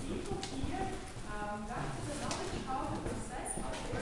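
A group walking on a hard floor: many overlapping footsteps with heel clicks, and several people talking among themselves.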